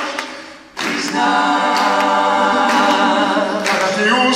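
A group of voices singing a song together, holding long sustained notes after a short drop in the first second.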